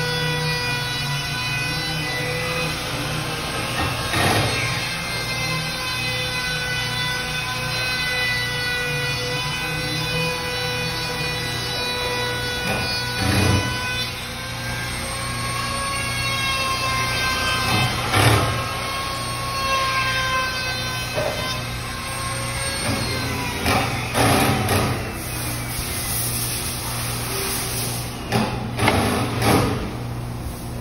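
Handheld trim router running with a steady high whine that wavers and dips a little in pitch as it is worked along a panel edge. Several sharp knocks and clatters break in, the loudest near the middle and toward the end.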